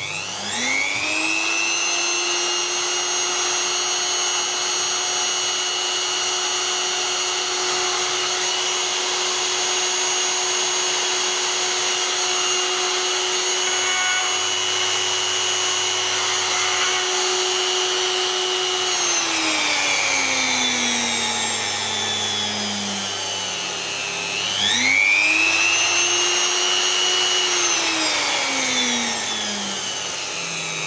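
A brushless DC motor being spun as a generator by a power tool, giving a steady high whine. It spins up at the start, runs down about two-thirds through, spins up to speed again and slows once more near the end.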